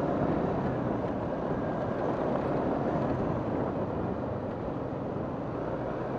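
Steady riding noise from a Yamaha NMAX 155 scooter at low speed: an even rush of wind on the microphone mixed with engine and tyre noise.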